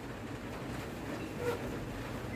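Faint steady background rumble with no distinct event, and a brief faint sound about one and a half seconds in.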